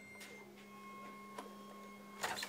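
Near silence: quiet room tone with a faint steady hum and a couple of faint clicks.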